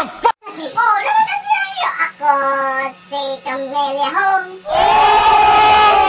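A voice singing a short tune in held notes, followed about three-quarters of the way in by a louder, noisier stretch with one long held vocal note.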